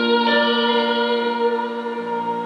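A woman's voice holding a long sung note over a sustained chord on a Yamaha CP5 stage piano, the pitch shifting once near the start and the sound slowly fading as the song closes.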